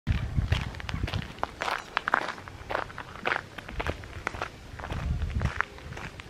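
Footsteps of a person walking in flip-flops on a sandy, gravelly dirt path: an uneven run of soft slaps and light crunches.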